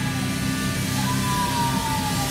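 Live rock band's electric guitars and bass holding a sustained chord, with a guitar note gliding down in pitch about a second in.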